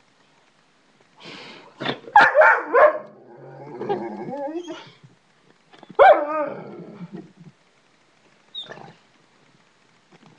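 A pet dog barking in short loud bursts: a quick run of several barks about a second in, another bark about six seconds in, and a faint short one near the end.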